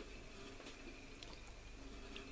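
Near silence: faint room hum with a few soft ticks.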